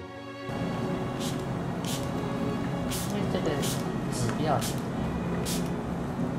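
Hand trigger spray bottle misting water onto ink-painting paper: about eight short hissing sprays at uneven intervals, wetting the sheet for a mist-and-spray effect around a painted waterfall.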